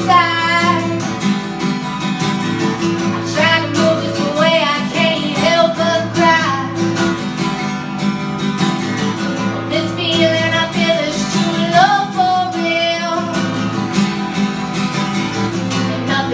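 A woman singing a song while accompanying herself on an acoustic guitar. The guitar plays throughout, and the sung phrases come and go with short instrumental gaps between them.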